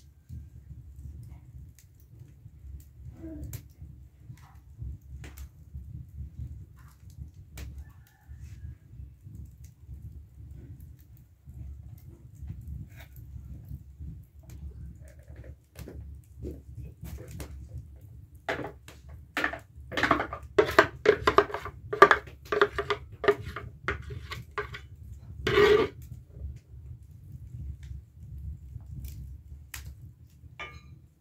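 A spoon scraping and tapping batter out of a plastic bowl into a cast-iron pan, in a quick run of strokes from a little past the middle, with one louder knock near the end. Under it, a wood fire crackles with scattered pops over a low steady rumble.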